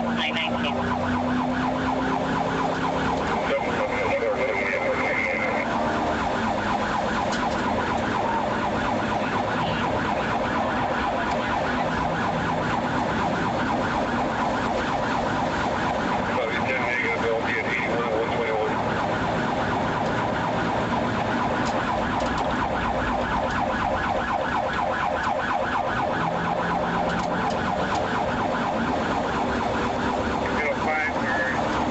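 Police car siren sounding continuously in a fast, rapidly repeating warble, heard from inside the pursuing squad car with engine and road noise beneath it.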